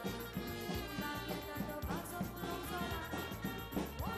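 Goan brass band playing a tune: trumpets and saxophones holding notes over a steady bass drum and snare drum beat.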